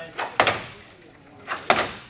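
Two sharp clanks from a ninja-warrior hanging-ring obstacle as a competitor swings from hold to hold on it, one about half a second in and one near the end, each ringing briefly.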